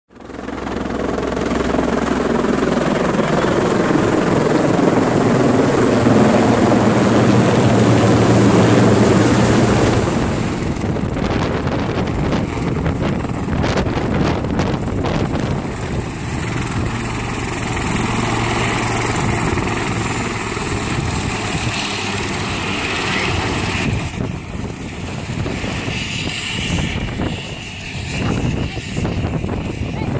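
Helicopter on the tarmac with its rotors turning and engines running: loud for the first ten seconds, then somewhat quieter, with a higher steady whine later on.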